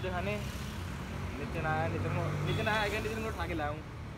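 Talking voices over the low, steady hum of a road vehicle's engine, which swells about two seconds in.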